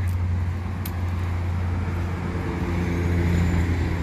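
Road traffic passing on a multi-lane road: a steady low rumble of car tyres and engines, with a vehicle's engine hum coming in about halfway through.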